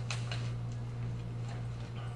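Room tone with a steady low hum and a few faint, light clicks.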